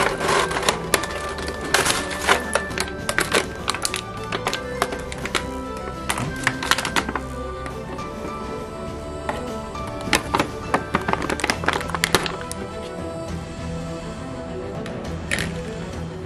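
Background music with steady tones, over repeated crackles and clicks of a clear plastic blister tray being handled and lifted, thickest in the first half.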